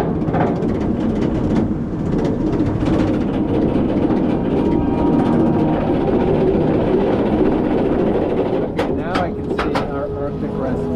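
Roller coaster train being pulled up its chain lift hill: a steady mechanical rattle of the lift chain and train. A few short, sharp sounds come near the end as the train nears the crest.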